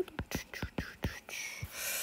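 Stylus tip tapping and scratching on an iPad's glass screen as handwriting is added, a quick irregular run of light taps and ticks. A soft whispered breath comes near the end.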